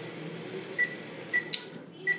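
Apple juice being poured from one bottle into another, with a few short high blips and a click about one and a half seconds in.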